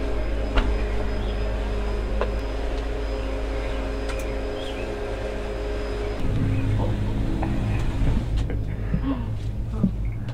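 Cable car station machinery humming steadily, heard from inside a gondola cabin. About six seconds in, the hum gives way to a lower rumble with scattered clicks and knocks.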